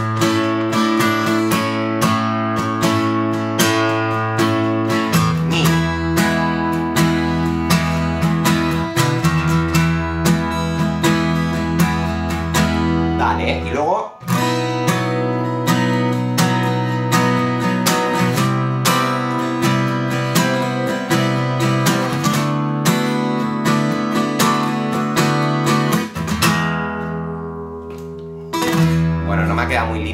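Steel-string acoustic guitar strummed in a steady rhythmic pattern, full five- and six-note chords changing every few seconds. Near the end one chord is left to ring and fade before the strumming picks up again on an E major chord.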